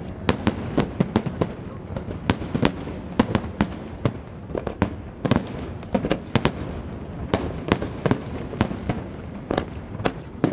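Aerial firework shells bursting in a fireworks display: many sharp bangs in quick, irregular succession, with a couple of brief lulls.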